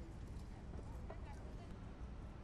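City street ambience: a steady low traffic rumble with indistinct voices of passers-by and faint footsteps on paving.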